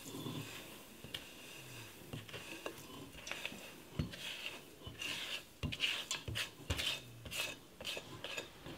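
Granulated cane sugar sliding out of a mixing bowl into a stainless steel pot of vinegar, with a silicone spatula scraping the bowl. The sound is a faint, soft rasping, with a few light scrapes and taps in the second half.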